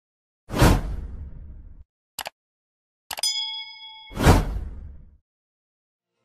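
Transition sound effects: a whoosh that fades out over about a second, a short click, then a bright ding that rings for about a second, followed by a second, louder whoosh.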